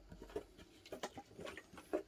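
Faint scattered clicks and light handling noises: a few short taps, spread through the two seconds.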